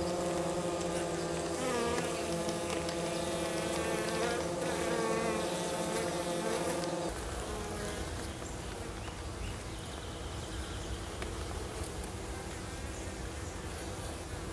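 Minnesota Hygienic honey bees buzzing close by, a steady hum of wings. About halfway through the sound changes abruptly: the hum thins and a low rumble comes in beneath it.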